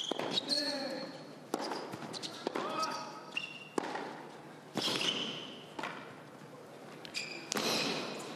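Tennis rally on an indoor hard court: sharp racquet hits and ball bounces about once a second, with short high squeaks from shoes on the court and some voices between the shots.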